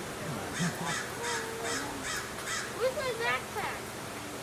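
A bird calling about six times in a quick, even series, roughly two to three calls a second, with people talking underneath.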